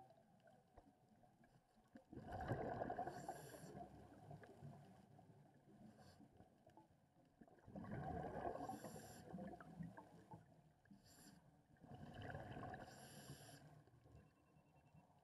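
Scuba diver breathing out through a regulator underwater, heard as three bursts of bubbling about five seconds apart, with quiet underwater hiss between.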